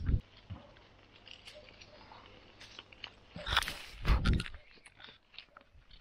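A person chewing fruit just picked off a tree, with small wet mouth clicks. A little over three seconds in there is a louder rustle, followed by a low bump.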